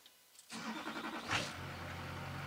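Vehicle engine cranked by its starter about half a second in, catching after about a second and settling into a steady idle, heard from inside the cab.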